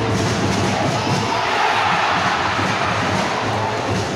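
A large stadium crowd of football supporters chanting and cheering: a dense, continuous mass of voices singing together, swelling slightly in the middle.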